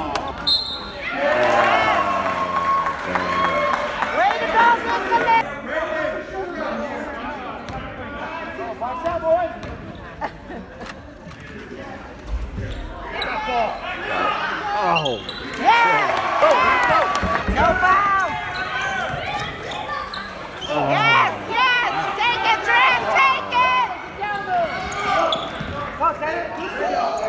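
Basketball game on an indoor hardwood court: the ball bouncing amid players' running and spectators' shouts and voices, echoing in a large gym.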